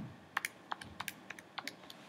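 Keys being pressed on a TI-84 Plus Silver Edition graphing calculator: a string of about a dozen light plastic clicks, the first the loudest.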